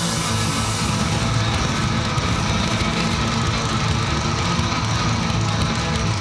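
Live heavy metal music: amplified cellos over a drum kit played hard and fast.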